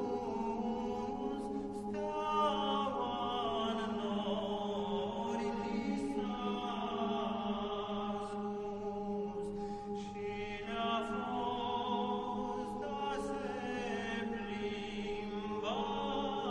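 A Romanian colindă, a traditional Christmas carol to the Three Kings, sung by a group of voices in long held notes over a steady low sustained note.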